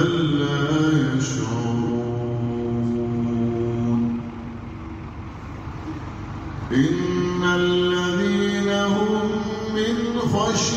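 Unaccompanied Sufi devotional chanting in men's voices, long drawn-out held notes. One phrase fades about four seconds in, and a second begins about seven seconds in.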